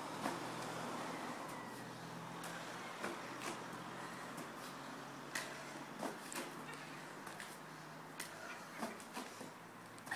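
Faint, quiet background with a steady low hum. Scattered soft taps and knocks come at irregular intervals from a man's hands and feet landing on foam floor mats as he does burpees.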